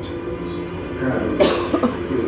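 A cough about one and a half seconds in, sharp and brief, over television drama audio with steady background music and low voices.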